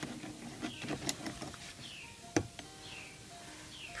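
Metal clicks and a sharper knock, the loudest about two and a half seconds in, as pliers grip the sprue and a freshly cast pewter spoon is pulled from the opened bronze spoon mold, over faint background music.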